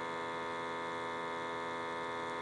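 A steady electrical hum with a buzzy edge, unchanging in pitch and level.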